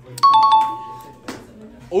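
Doorbell-style two-note 'ding-dong' chime, a higher note then a lower one, ringing for about a second; it opens with a few quick clicks. It is a sound effect laid over the emoji reactions in the edit.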